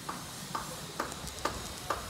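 Footsteps on pavement, about two steps a second, with faint street hiss behind.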